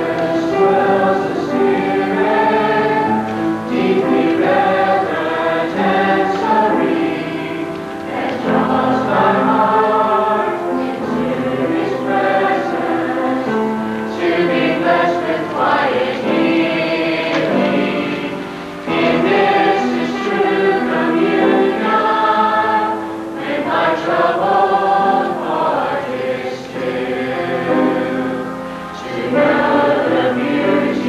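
Church choir singing in parts, voices sustaining and moving together without break.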